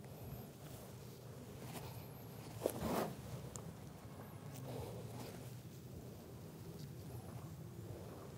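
Faint open-air background with scattered thin high chirps from distant birds, and a short knock and scuffing rustle about three seconds in.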